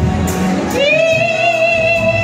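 A woman singing live over a full band, sliding up into one long, high held note about three-quarters of a second in.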